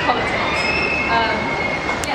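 Train wheels squealing on the rails: a long, high, steady squeal that holds for most of the two seconds, over voices.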